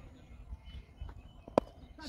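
Faint open-air background rumble with a few soft thuds, and one sharp knock about one and a half seconds in.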